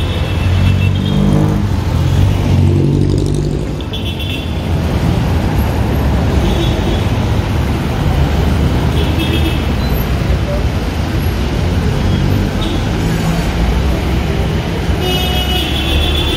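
City street traffic: a steady low rumble of passing vehicle engines, with one engine passing close in the first few seconds.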